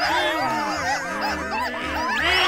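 Several cartoon character voices make excited wordless vocal noises at once, rising and falling in pitch, over background music.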